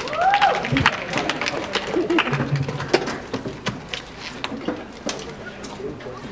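Laughter and voices with scattered clicks and knocks, and a short low hum about two and a half seconds in; no music is playing.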